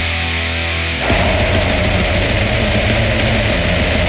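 Experimental death metal from distorted guitars, bass and drums. A low chord is held for about the first second, then the full band comes in, dense and fast.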